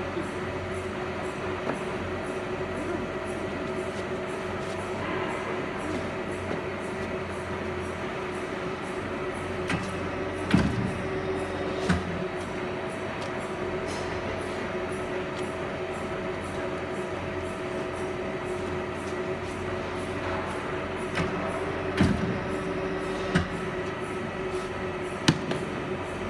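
Hydraulic four-column die cutting press running with a steady hum from its hydraulic pump and motor, with a few sharp knocks during cutting and handling of the die on the bed.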